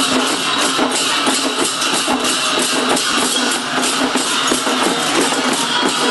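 Loud percussion music: rapid, dense drumbeats mixed with bright metallic clashing, with no let-up.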